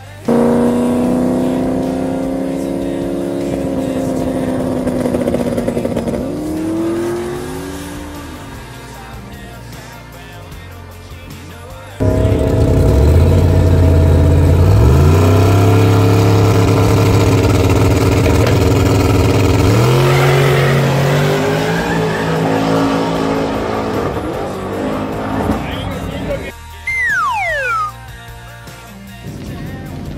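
Drag-race engines at full throttle: one run fades out within the first eight seconds, then a much louder run starts about twelve seconds in, its pitch climbing in steps. A few short squeals near the end.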